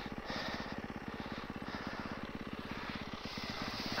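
Snow bike's dirt-bike engine idling steadily, a fast even run of low firing pulses.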